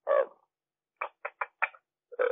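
Brief fragments of a person's voice over a call line that cuts off the high end: one short sound, then about a second in four quick short bursts.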